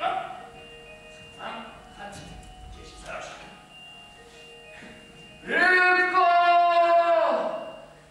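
A voice holds one long, steady sung note for about two seconds, starting about five and a half seconds in. Before it there are only faint, scattered stage sounds.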